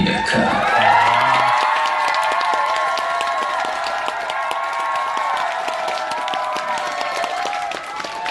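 Concert audience cheering and clapping as a song ends, with many high voices screaming together over steady applause.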